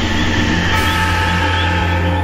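A steady, low sustained drone with a few faint high held tones over it: the dark ambient sound bed that closes a radio promo for a mystery show.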